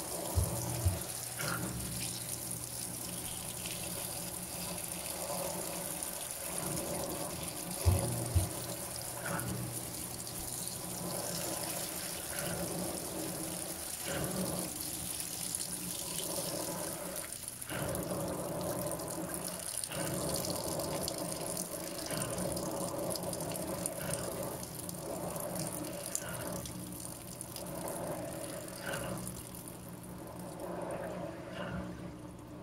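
A Panasonic 16 kg top-load washing machine filling: a steady stream of water pours from the dispenser onto the sheets in the drum, splashing. Two pairs of short sharp knocks come near the start and about eight seconds in, and the flow stops right at the end.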